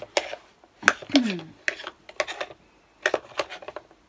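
Clicks, taps and light clatter of small hard craft supplies being picked up, opened and set down on a desk, in several quick clusters.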